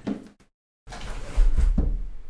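A brief cut to dead silence, then crumpled packing paper rustling and a cardboard board-game box set down on the tabletop with a dull thump about a second and a half in.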